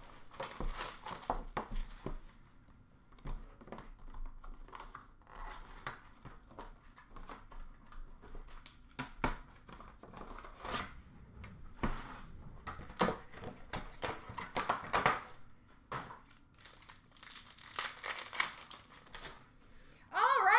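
Plastic wrapping on a trading-card box crinkling and tearing as it is stripped off, with irregular rustles and sharp clicks of the box and cards being handled.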